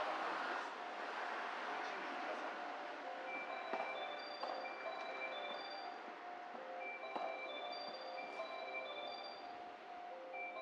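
A melody of short, bell-like mallet notes, like a marimba or glockenspiel, played over a station platform's public-address speakers, in the way of a platform chime. It grows clearer from about three seconds in, after a rush of wind noise at the start.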